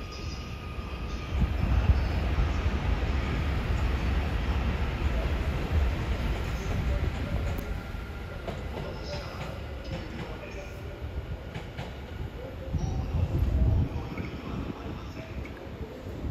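Nose-suspended traction motors and running gear of the Kode 165 electric car rumbling low as it pulls a train away from a stand. The rumble swells about a second and a half in, eases off, and swells again near the end.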